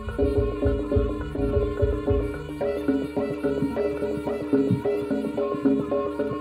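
Live jaranan gamelan ensemble music: drums and gongs keeping a fast, even rhythm under a repeating pitched melody.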